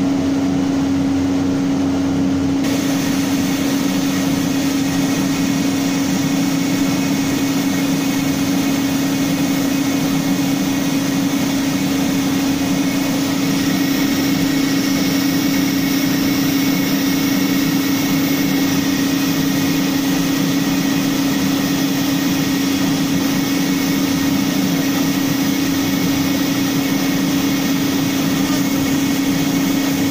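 CNC router spindle running at 18,000 rpm, a steady pitched hum over noise, as its 90-degree V-bit engraves softwood pallet boards. About three seconds in, a hissier layer of noise joins and holds steady.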